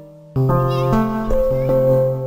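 Background music with held notes, coming in about a third of a second in, with a domestic cat meowing over it.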